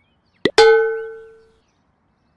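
A single metallic ding sound effect: a short click, then one bright struck tone that rings and fades away over about a second.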